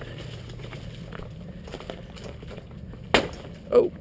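A mountain bike being walked down rough stone steps, then about three seconds in one sharp, loud knock as the bike strikes something hard. The rider takes it for the frame hitting.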